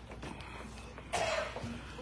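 A single person's cough about a second in, short and sharp, over a steady low hum.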